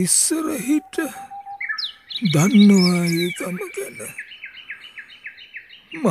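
Bird calls: a high, rapid trill, then a run of short repeated notes about four a second. A person's voice sounds briefly at the start and once more around two to three seconds in.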